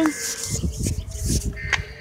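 Phone microphone handling noise: irregular bumps and rubbing as a hand covers the phone, with a faint steady tone under it.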